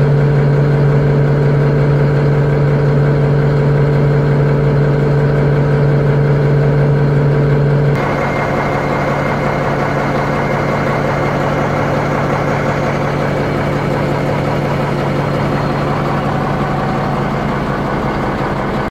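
Caterpillar D6H bulldozer's six-cylinder diesel engine idling steadily. About eight seconds in, the sound changes abruptly and becomes slightly quieter and rougher.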